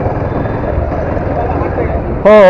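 Motorcycle engine running steadily with a low, rapid pulsing rumble as the bike rides off, heard close from the rider's own camera.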